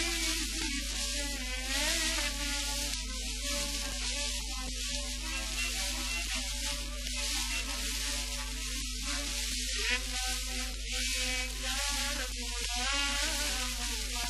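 A 1949 recording of a Greek popular song playing, its wavering melody under a heavy surface hiss and a steady low hum, typical of an old disc transfer.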